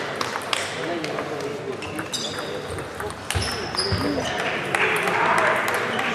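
Celluloid table tennis balls clicking sharply off bats and tables in a sports hall, many hits in quick irregular succession, with voices underneath. Near the end, as the rally finishes, a brief swell of crowd noise.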